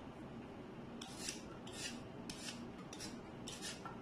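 A kitchen utensil scraping at food in short, quick strokes, about eight of them irregularly spaced, starting about a second in.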